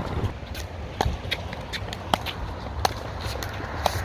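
A pickleball rally: a series of sharp pops from paddles striking the plastic ball and the ball bouncing on the hard court, the loudest about a second apart.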